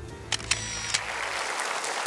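Background music ending with two sharp clicks about half a second apart, then a studio audience starts applauding.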